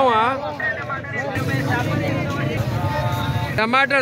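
A man talks briefly, then a steady low rumbling noise with faint voices behind it runs for about two seconds and stops abruptly.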